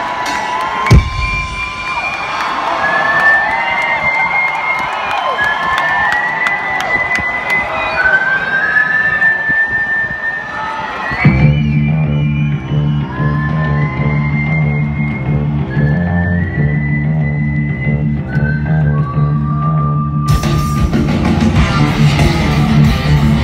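Live rock concert: the intro of a song, a whistled melody with sliding notes over crowd noise and cheering. About halfway a steady, pulsing low synth line comes in under the whistling, and near the end the full band with distorted guitars comes in loudly.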